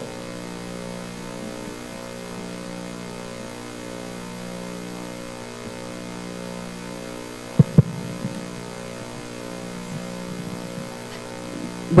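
Steady electrical mains hum in the sound system, several even tones that slowly swell and fade, with a short double knock about two-thirds of the way through.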